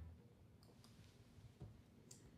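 Near silence with three faint short clicks.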